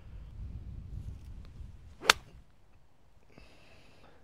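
A 52-degree wedge striking a golf ball on a full swing: a single sharp click about two seconds in.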